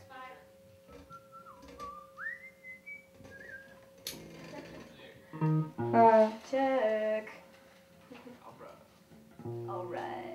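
Informal warm-up of a small rock band: a faint wavering whistle early on, then bass guitar notes plucked through an amp and a woman singing a short line into the microphone about halfway through, with a steady amplifier hum underneath.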